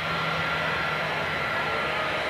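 Jet aircraft engines running, a steady rushing noise with a thin high whine held at one pitch.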